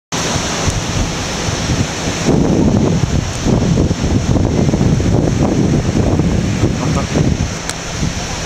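Wind rumbling and buffeting on the camera microphone over the steady wash of surf; the gusty rumble grows heavier about two seconds in.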